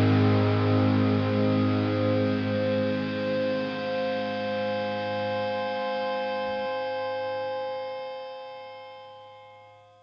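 Electric guitar and bass guitar holding a final chord that rings out and slowly fades away. The lowest notes stop about two-thirds of the way through, and the higher notes die away near the end.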